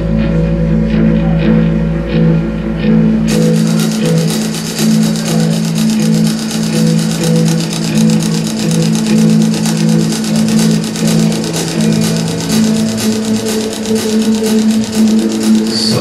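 Live rock band playing a slow instrumental passage: held electric guitar and bass notes, with a deep low note dropping out and drums and cymbals coming in about three seconds in.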